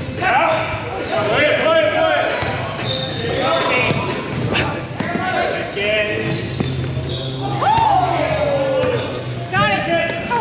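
Volleyball rally in a gym: a few sharp slaps of the ball against hands, with players' voices and calls echoing in the hall throughout. One long falling call comes near the end.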